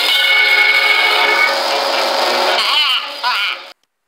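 Old cartoon soundtrack music with a long held high note, then a few short warbling cartoon-voice calls, cutting off suddenly just before the end.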